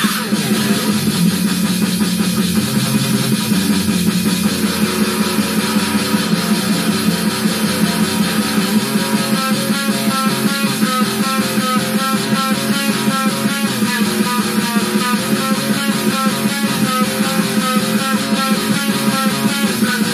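Electric guitar with an 18-tone equal-tempered microtonal neck playing fast death-thrash metal riffs through a small Ibanez Tone Blaster amp, over a fast black-metal drum loop. The riff changes to a choppier repeating figure about halfway through.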